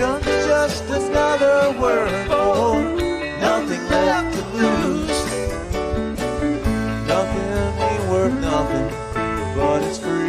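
Live rock band playing an instrumental passage: electric guitar lead with bent notes over keyboard, bass and drums.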